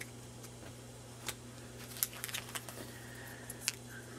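Faint, scattered clicks and light handling noises of Pokémon trading cards and a foil booster pack being moved in the hands, over a steady low hum.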